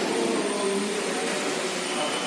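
A steady rushing noise with no clear source.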